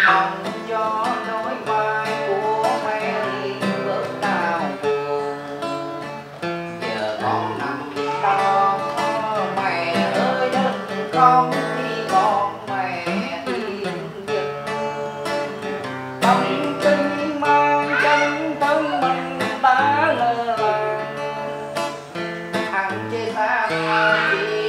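A man singing a Vietnamese parody song (nhạc chế) to his own acoustic guitar.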